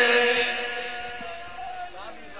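A man's voice holding the last long chanted note of a devotional qasida refrain into a microphone. The single steady note fades away over about a second and a half.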